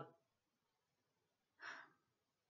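Near silence, broken near the end by one short, audible breath from a woman.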